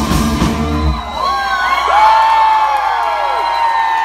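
A live rock band's closing chord and drum hit ends abruptly about a second in, and the audience breaks into whoops and cheers, with long arching, falling whoops.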